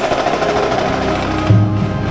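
Indoor percussion ensemble playing, with a set of tenor drums (quads) close by: rapid, dense drumming, joined about one and a half seconds in by low held pitched notes.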